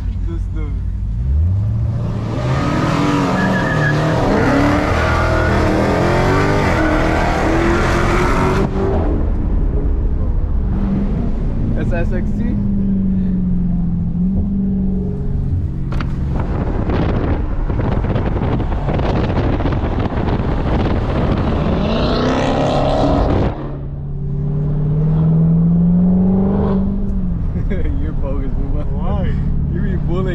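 Dodge Charger SRT's V8 engine accelerating hard, heard from inside the cabin: a full-throttle pull rising in pitch over the first several seconds, and a second pull that cuts off suddenly a little past twenty seconds before the engine picks up again.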